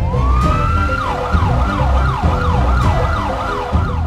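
Siren sound winding up in pitch over about a second, then repeating quick falling whoops about two and a half times a second, over electronic music with a heavy beat.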